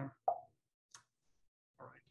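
Hesitant speech: a trailing "uh" and a short vocal sound, a faint click about a second in, then "all right" starting near the end.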